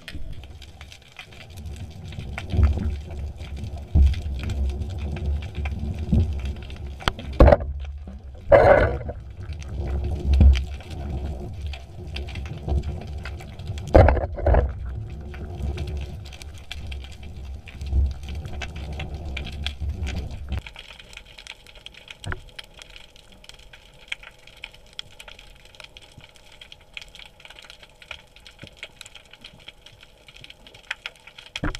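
Underwater camera sound: an uneven low rumble of water moving around the housing, with scattered clicks and several louder knocks and thumps in the first half. About two-thirds of the way through it drops to a quieter hiss with faint, scattered clicks.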